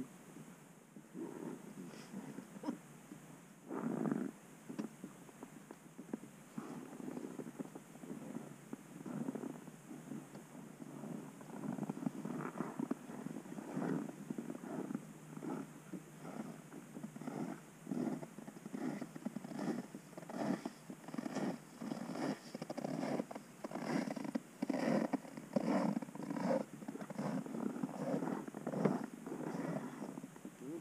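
An idling engine heard as a muffled rumble that pulses a few times a second, growing more regular and a little louder in the second half.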